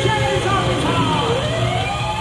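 Hard rock band playing live, with a lead line that swoops down in pitch a little past a second in, then rises again to a long held note.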